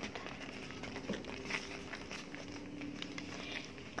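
Thick soursop jam cooking down in a frying pan, with scattered soft pops and crackles as it bubbles and a metal spoon stirs it.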